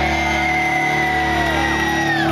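Electric guitar amplifier feedback left ringing as the song ends: a high whine held steady, with a lower tone that slides down about three-quarters of the way through, over a steady amplifier hum.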